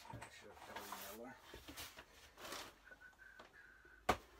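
Quiet: faint rustling and handling noises from a man moving about, with a brief low mumbled voice about a second in.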